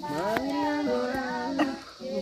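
A person singing unaccompanied: long held notes that rise slightly and waver, easing off just before the end.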